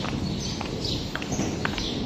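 Footsteps on a concrete floor: a few light, short steps about two a second, over steady background noise.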